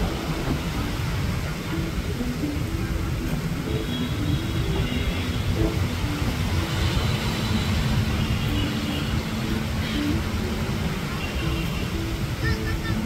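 Beach ambience: a steady low rumble of surf, with snatches of distant voices. A steady low hum comes in about seven seconds in.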